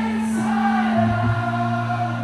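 Live band playing: several voices singing together over a held bass note that drops to a lower note about a second in.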